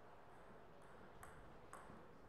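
Table tennis ball striking hard surfaces: four light, ringing ticks about half a second apart.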